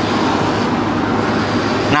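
Cordless electric hair clipper buzzing steadily as it cuts a man's hair.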